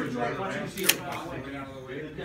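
A single sharp plastic click just before a second in, as game pieces are handled on the tabletop, over soft talk.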